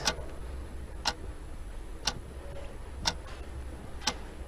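Quiz-show countdown clock sound effect ticking once a second, short sharp clicks.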